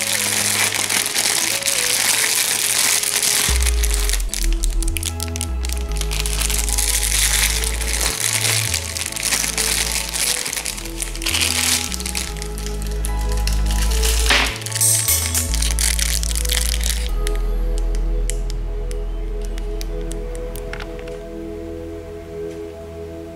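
Thin clear plastic bag crinkling and crackling as it is worked off a diecast model airliner, stopping about three-quarters of the way through. Background music with a bass line plays throughout.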